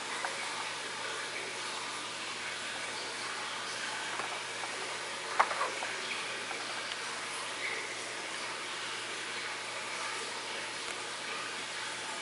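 Handling of a small plastic battery charging box: one sharp click about five seconds in, with a couple of faint ticks after it, over a steady hiss.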